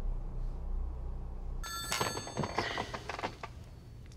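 Mobile phone ringing with an electronic ringtone of several steady high tones, starting a little before halfway through; before that only a low hum.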